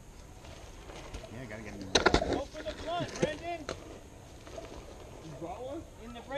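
A sharp clatter about two seconds in, then a person laughing, and laughter again near the end.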